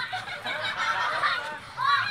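Several children's high voices shrieking and calling out at once, many overlapping squeals, with a loud burst near the end.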